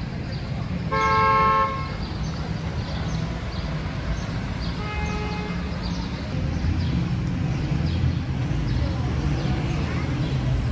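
Street traffic running steadily, with a vehicle horn honking once, loud and under a second long, about a second in, and a second, fainter horn beep about five seconds in.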